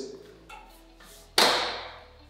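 A heavy tempered-glass sliding door panel is pushed along its track. About a second and a half in there is a sudden whoosh that fades out within half a second.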